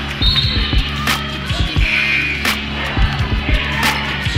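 A basketball bouncing on a hardwood gym floor during play: repeated irregular thumps with a few sharp smacks and brief sneaker squeaks, over steady background music.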